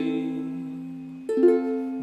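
Ukulele chords strummed slowly: one chord struck at the start and another about a second and a half later, each left to ring and fade.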